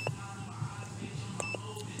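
Handheld automotive scan tool giving a short high keypress beep about one and a half seconds in, with a click at the start and a faint tick near the end, as its menus are stepped back. A steady low hum runs underneath.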